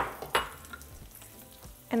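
Long-grain white rice frying in hot oil in a pan, a faint steady sizzle. Two sharp clicks come in the first half-second.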